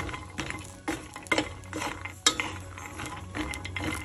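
Wooden spatula stirring halved fresh macadamia nuts in a dry frying pan to dry them off. The nuts clatter and the spatula scrapes the pan in irregular strokes, with one sharper knock a little past halfway.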